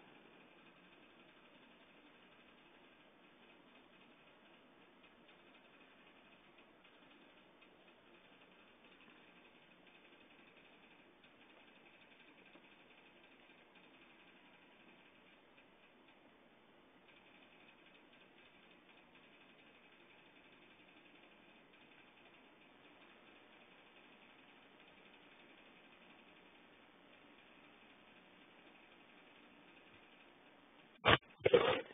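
Near silence: a faint steady hiss with faint ticking clicks that fit typing on a computer keyboard and clicking a mouse.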